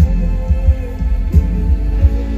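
Live pop band music through a concert PA, recorded from the crowd: a woman's voice holds a sung note over booming, repeated kick-drum and bass thumps.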